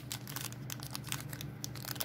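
Plastic bag crinkling in the hands as a battery is unwrapped from it: a run of irregular quick crackles.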